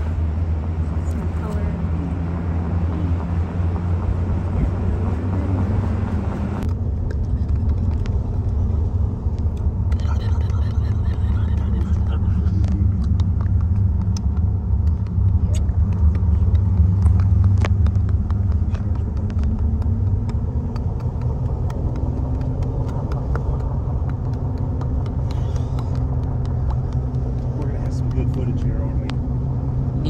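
Road noise of a moving pickup truck, heard from inside the cab: a steady low rumble of engine and tyres, with a rush of wind that cuts off suddenly about seven seconds in.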